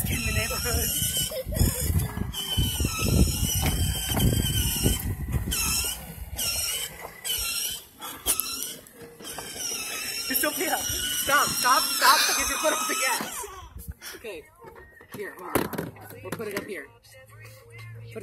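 A pop song with singing plays from the small built-in speaker of a ride-on toy Mercedes, fed from a phone by an aux cord. It gets quieter after about fourteen seconds.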